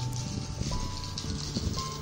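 Music: a simple melody of held notes, each lasting about half a second to a second, over a sustained low bass note.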